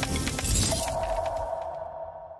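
Logo-reveal sound effect over music: a dense clatter of glass-like shattering hits, then a ringing two-note tone that comes in under a second in and slowly fades away.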